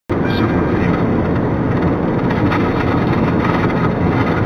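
Steady road and engine noise inside a moving car at highway speed: an even rumble of tyres and engine heard from the cabin, starting abruptly just after the opening.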